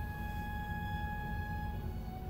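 Soft background music of held, sustained notes. Near the end one note gives way to a slightly lower one. A low hum sits underneath.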